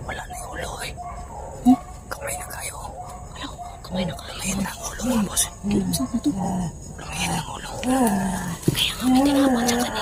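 A person's voice murmuring in short, indistinct phrases, with a single sharp click about two seconds in.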